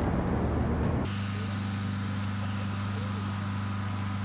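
Wind buffeting the camcorder microphone for about a second, then an abrupt cut to a steady low hum.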